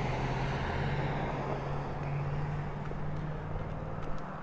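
Steady low hum under an even haze of outdoor traffic noise.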